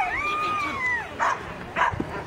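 A dog gives one long high whine that holds and then falls away after about a second, followed by two short barks.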